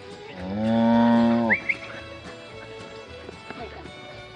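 A cow moos once, a single call lasting about a second that rises slightly at the start and cuts off sharply.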